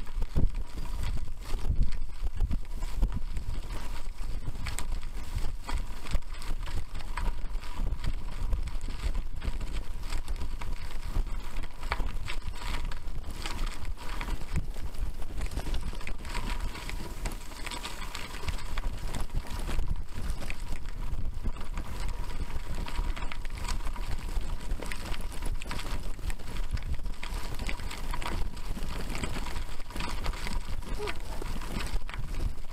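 A bicycle rolling fast over a loose gravel track, picked up by a camera riding on the bike: a constant rattle of small knocks from the stones, over a low rumble of wind on the microphone.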